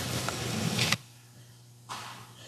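About a second of noisy sound that cuts off suddenly, then a quiet, reverberant hall with a steady low electrical hum and a brief faint sound near the end.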